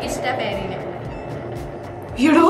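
A cardboard prize wheel spinning down on a turntable base, a low rolling rumble that fades as it slows, with light jazz music underneath.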